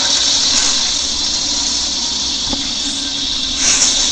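A steady, loud high hiss with a fainter low hum beneath it, a single short click about halfway through, and the hiss swelling briefly near the end.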